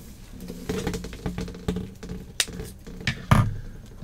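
Handling and movement noises close to the microphone: rustling, a couple of sharp clicks, then a heavier thump a little past three seconds in.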